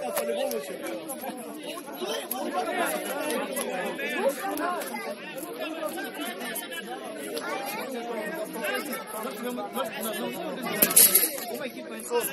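Several people's voices talking over one another, an unbroken background chatter with no single clear speaker. A brief, loud burst of noise cuts in near the end.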